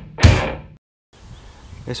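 A short whoosh transition sound effect, loud at first and fading away within about half a second, followed by a moment of dead silence; a man starts speaking near the end.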